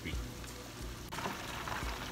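Catfish pieces deep-frying in an electric basket fryer: hot oil bubbling and sizzling steadily, with a sudden change in the sizzle about a second in.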